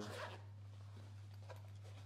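Faint handling of a blood glucose meter kit in its soft case: light rustles and a few small clicks over a steady low hum.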